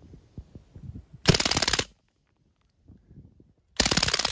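Suppressed MAC-style submachine gun fired on full auto: two short bursts of rapid shots, each about half a second long. The first comes just over a second in and the second near the end.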